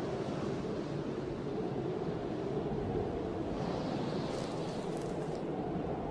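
Steady low rushing wind noise, with a brief airy hiss about four to five seconds in.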